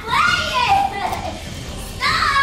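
A woman squealing in high-pitched cries without words, loudest in the first second and quieter after.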